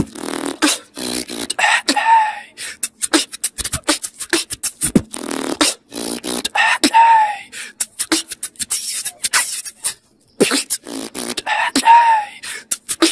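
Solo beatboxing close into a handheld recorder: a fast run of mouth-made drum sounds with a short arched vocal note that comes back about every five seconds. The beat breaks off briefly about ten seconds in.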